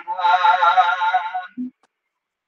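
Khmer smot chanting: a man's voice holds one long wavering note, which breaks off about a second and a half in.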